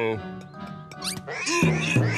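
Cartoon soundtrack: a character's wordless vocal sounds over background music, with a quick rising glide about a second in and a busier flurry of sound near the end.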